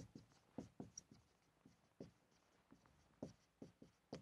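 Faint felt-tip marker strokes on a whiteboard as words are written: short, irregular taps and squeaks, a few per second.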